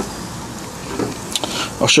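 Steady rushing background noise with a few faint light clicks.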